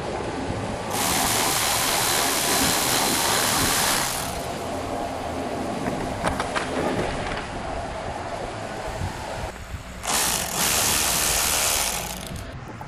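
Cordless electric ratchet running a Torx T30 bolt out, in two runs: one of about three seconds starting a second in, and a shorter one of about two seconds near the end. Between the runs there are a few clicks and knocks of handling.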